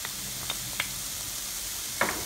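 Cauliflower rice and shrimp frying in a wok with a steady hissing sizzle, with a few light ticks in the first second as diced ham is tipped in.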